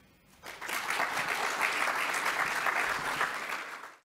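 Audience applauding, beginning about half a second in and fading away near the end.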